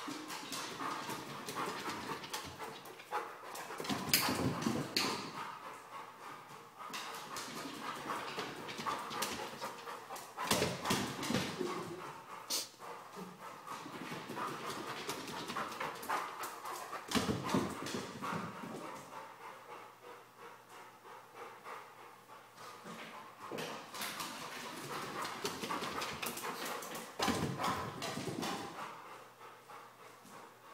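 A large dog's paws clattering on hardwood stairs as it runs up and down them in repeated bursts every several seconds, with the dog panting between runs.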